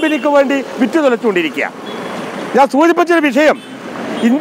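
A man speaking Malayalam, with road traffic noise filling a pause just before the middle.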